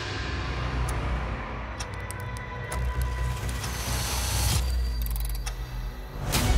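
Dark cinematic soundtrack music with a steady low drone, overlaid with scattered sharp mechanical clicks and a run of fast ticks near the end.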